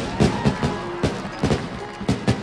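Fireworks going off: a quick, irregular run of bangs and pops, about four a second, over faint music.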